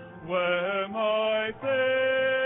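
Congregation singing a gospel hymn in parts, in short phrases that end in a long held note.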